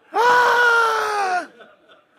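A single drawn-out, high-pitched vocal cry, held for over a second and falling slightly at the end.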